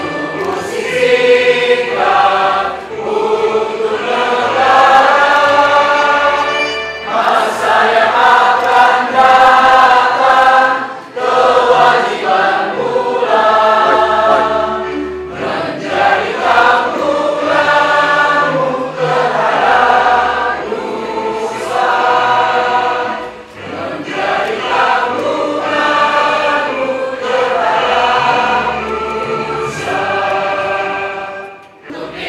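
A standing crowd of men and women singing a song together, in phrases of long held notes with short breaks between them.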